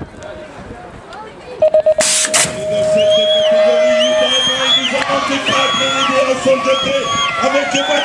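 BMX start-gate sequence: a few quick electronic beeps, then a long steady tone, with the metal start gate slamming down in two loud clangs as the long tone begins. Spectators then shout and cheer.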